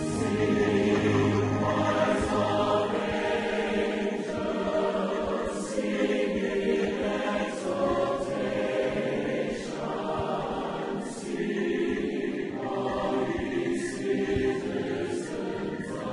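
Background music: a choir singing long, held notes.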